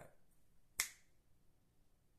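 A single sharp finger snap, a little under a second in.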